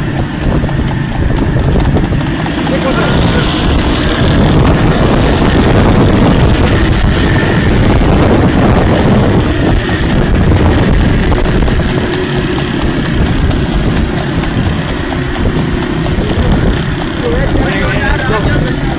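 Motorcycle engines running at road speed, with wind noise on the microphone; loud and steady.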